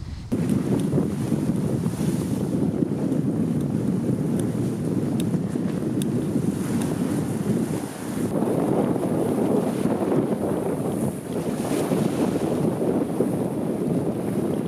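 Strong wind buffeting the microphone over choppy lake waves splashing against sand-filled wire-mesh flood barriers, with a brief dip about eight seconds in.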